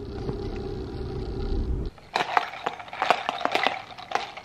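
Steady low hum of a car interior for about two seconds, then ice cubes rattling and clinking inside a plastic iced-latte cup as it is shaken to mix the drink.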